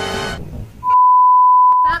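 A music clip cuts off shortly after the start. Then a loud, single steady electronic bleep, the censor-bleep sound effect, holds for about a second.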